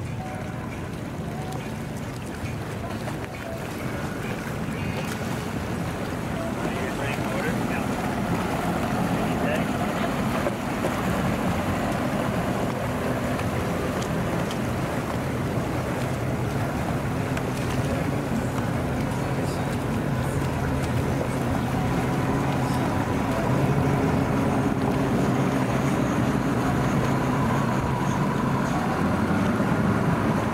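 Yamaha outboard motors on center-console boats running at low, no-wake speed through a channel: a steady low engine hum that grows louder over the first ten seconds or so as a boat passes close, then holds, with water washing.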